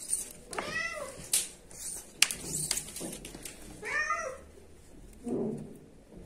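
A cat meowing twice, each meow a short call rising and falling in pitch. There are a few sharp clicks between the two meows.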